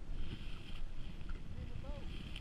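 Wind rumbling on the microphone and choppy water lapping against the hull of a small boat, with a faint voice near the end.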